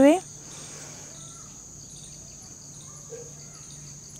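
Steady, high-pitched trill of insects, with a faint low hum beneath it.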